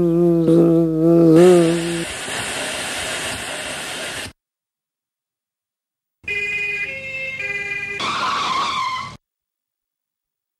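A wavering pitched tune ends about two seconds in. A loud hiss follows and cuts off suddenly. After about two seconds of silence, an ambulance's two-tone siren sounds for about three seconds, alternating between two pitches.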